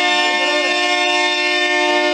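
Stage music: a keyboard instrument with a reedy tone holds one steady chord after a short phrase of changing notes.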